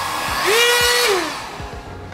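Drill Master heat gun switched on: a rush of blowing air with a motor whine that rises, holds and falls away, the noise dying down after about a second.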